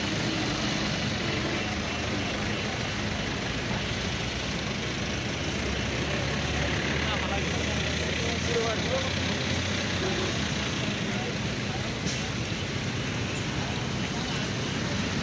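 Steady rushing noise of fire hoses spraying water onto a burning hay load, over a vehicle engine running steadily at idle, with voices in the background.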